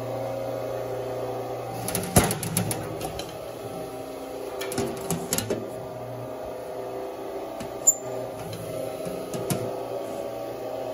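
Louver press punching louvers into a sheet-aluminum panel: a sharp punch stroke about two seconds in, a cluster of strokes around five seconds, and lighter knocks later.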